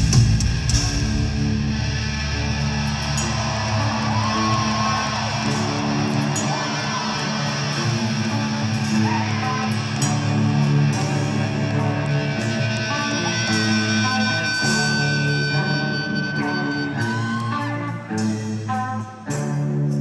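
Heavy rock band playing live: an instrumental stretch led by electric guitar over bass, with no singing. The sound dips briefly near the end.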